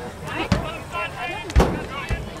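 Nearby people talking indistinctly, cut by two sharp thumps, one about half a second in and a louder one about one and a half seconds in.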